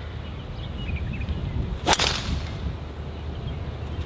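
Golf driver striking a teed-up ball: one sharp crack about two seconds in.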